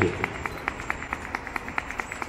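A run of quick, sharp hand claps and slaps, about seven a second.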